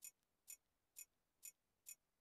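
Faint, evenly spaced clicks, about two a second, one for each step as a Kodi menu's poster row is scrolled along.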